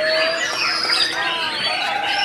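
White-rumped shamas (murai batu) singing: several caged birds at once, a dense overlap of loud whistled phrases and sliding notes.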